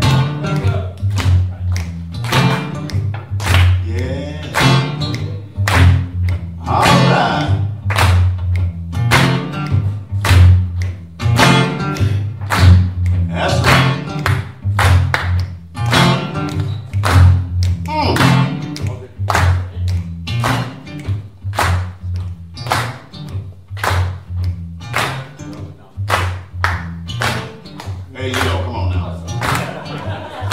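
Live acoustic blues breakdown: hand claps keep the beat at about two a second over a bass guitar line, with a man's voice singing and calling out between them.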